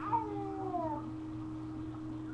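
Baby fussing: a couple of short whiny cries, each falling in pitch, in the first second.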